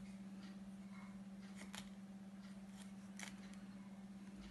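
Dry-wipe marker pen scratching faintly on a small whiteboard in short strokes as letters are drawn, with two sharper ticks, one a little before halfway and one near the end, over a steady low hum.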